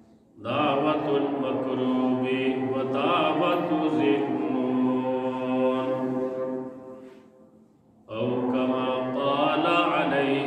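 A man's voice chanting a melodic religious recitation in long, held phrases: one phrase fades out and a new one begins about eight seconds in.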